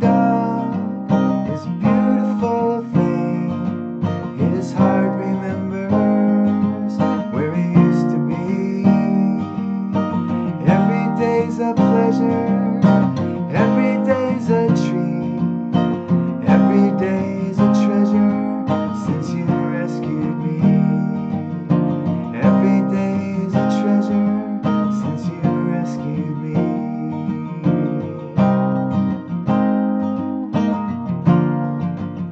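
Mahogany acoustic guitar strummed steadily through a chord progression, capoed at the eighth fret and played from G-shape chords, so it sounds in E-flat.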